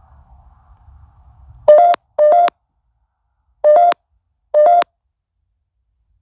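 Four short, loud electronic beeps from a device: two quick ones close together, then two more about a second apart. Each beep has a slight step up in pitch. A faint low hum underneath cuts out as the first beep sounds.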